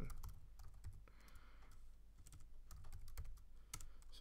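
Faint typing on a computer keyboard: a few keystrokes just after the start, a quiet gap, then a quick run of keystrokes near the end.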